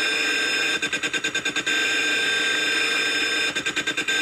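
Steady buzzy glitch tone from a Jarmageddon glitch generator playing through an amplifier, chopped into rapid stutter by a rotary telephone dial's pulse contacts as the dial spins back. There are two runs of evenly spaced cuts, about ten a second: one lasting about a second, starting just under a second in, and a shorter one near the end.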